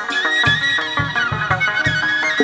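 Instrumental chầu văn music, the Vietnamese ritual music of spirit mediumship, played with no singing: quick melodic runs over several low drum beats.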